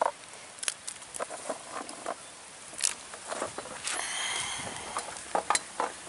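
Cut drumstick pieces tipped by hand from a steel plate into simmering sambar in a clay pot: scattered soft plops and light taps.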